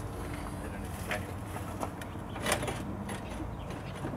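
Steady low hum of an idling engine, with a few faint clicks and knocks as the planter's parallel-link arm is rocked to check its play, which is slight.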